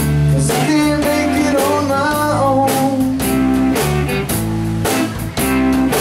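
Live blues-rock band playing an instrumental stretch: electric guitar lines with notes that step and slide in pitch, over bass and a drum kit keeping a steady beat.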